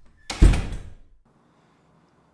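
A door slamming shut: one heavy bang about half a second in that dies away within a second.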